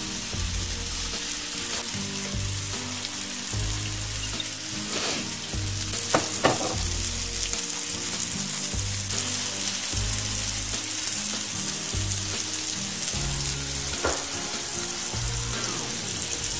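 Salmon fillets sizzling on the hot ridged plate of an electric contact grill, freshly topped with oil; a steady sizzle that grows a little louder about six seconds in.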